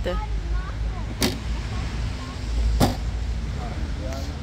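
Wind rumbling on the microphone, with two sharp knocks about a second and a half apart and faint voices in the background.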